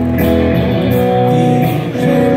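A rock band playing live through a large PA, heard from the crowd: guitar chords ringing over a low bass line, the chord changing shortly after the start and again near the end.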